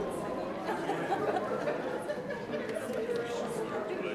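Chatter of a church congregation greeting one another, many people talking at once with no single voice standing out.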